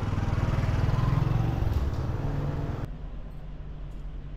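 Motor scooter engine running as it passes close by, loudest about a second or so in and easing off. It cuts off abruptly just before the end, leaving a quieter low steady hum.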